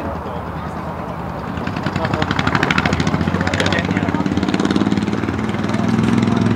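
An engine with a fast, even pulsing beat grows louder about two seconds in and keeps going.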